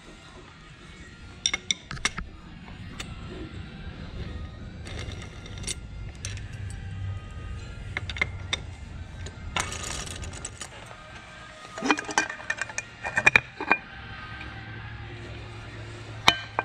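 Metallic clicks and clinks of bolts being undone and lifted out of a KTM 300 TPI's aluminium clutch cover as the cover is taken off, with a brief rattle about ten seconds in and ringing clinks of loose metal parts a couple of seconds later, over a steady low hum.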